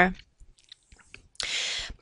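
A short, hissy in-breath by the narrator, about half a second long and coming near the end, just before she speaks again; otherwise near silence with a few faint ticks after her last word trails off.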